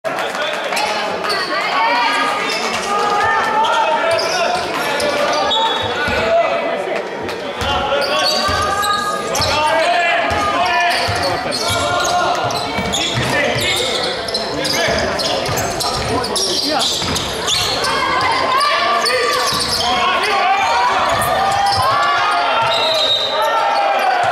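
Spectators chattering close by in a reverberant sports hall, over a basketball being dribbled on the wooden court.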